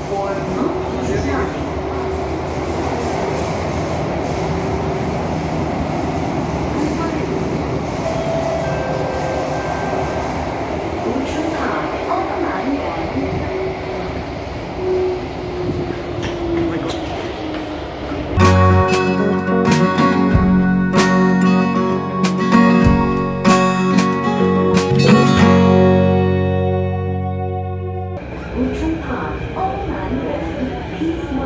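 Interior noise of a Kawasaki–CRRC Qingdao Sifang CT251 metro train running in a tunnel: a steady rumble and hum with a faint steady tone. About 18 s in, plucked-string music cuts in over it and plays for about ten seconds. It stops suddenly near the end, leaving the train noise again.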